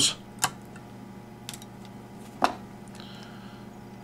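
Fly-tying scissors snipping off the feather stems at the head of a tube fly in the vise: a few small sharp clicks, the loudest about two and a half seconds in.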